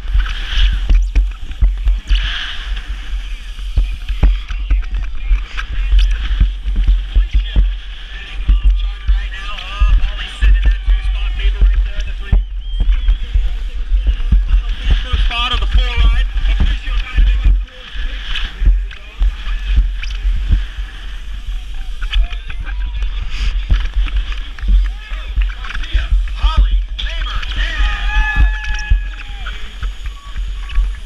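Wind buffeting an action camera's microphone as a BMX bike races down a dirt track, with a heavy steady rumble and frequent knocks and rattles from the bike over the bumps. Voices can be heard through the wind at times.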